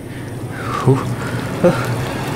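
Hot cooking oil sizzling in a frying pan over a gas flame, growing louder as it heats. Two short strained grunts from a voice break in about a second in and near the end.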